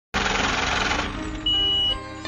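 Logo sting sound effect: a rush of static-like noise over a low note that fades after about a second, then a single high, steady beep lasting about half a second.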